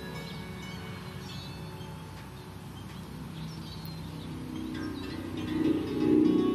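Soft plucked harp notes ringing out quietly, with a few bird chirps in the middle; the harp playing grows louder near the end.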